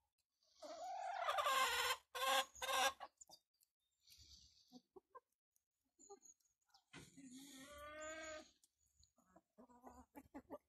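Chickens calling and clucking: a long drawn-out call followed by three sharp squawks in the first few seconds, another long call about seven seconds in, and quick short clucks near the end.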